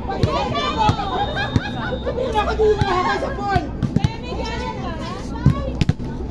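Several people talking and calling out at once, lively overlapping voices of volleyball players and onlookers, with a few short sharp knocks or claps scattered through.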